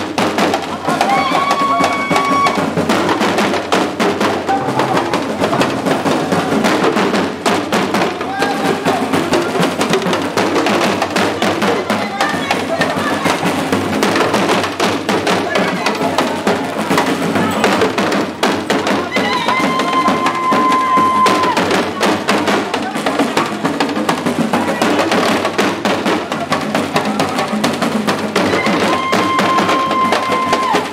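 Dagomba drum ensemble of lunsi talking drums and a gungon barrel drum playing a fast, dense dance rhythm, with voices among the drumming. A high note is held for a second or two, three times.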